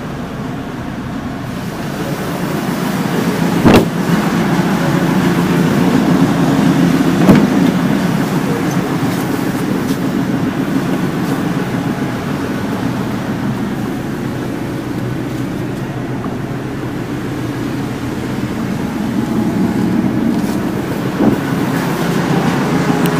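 A steady low mechanical hum that slowly swells and eases, broken by a few sharp knocks: one about four seconds in, one about seven seconds in, and one near the end.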